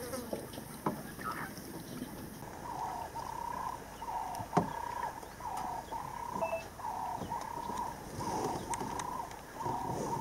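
An unseen animal calling in a steady series of short notes, about one and a half a second, starting about three seconds in. A single sharp knock near the middle.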